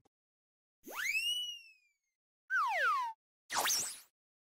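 Three short cartoon sound effects separated by silence: a tone that shoots up in pitch and then slowly sinks, then a quick falling glide, then a brief wavering upward sweep near the end.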